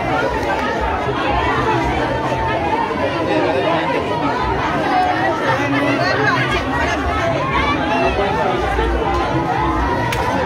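A packed crowd chattering, many voices talking over one another.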